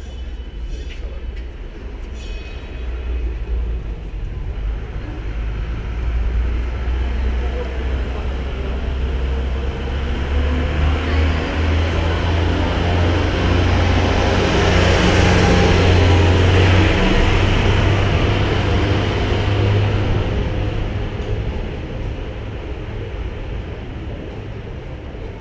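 Deep engine rumble of a heavy vehicle passing, growing louder to a peak a little past the middle and then fading away.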